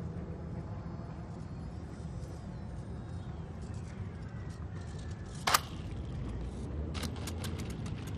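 Small electric RC plane motor, a BE1806 brushless with a 6x4 propeller, throttled back. It makes a faint whine that falls in pitch as the plane glides in to land. A single sharp click comes about five and a half seconds in, and a quick run of ticks near the end as the plane touches down on gravel.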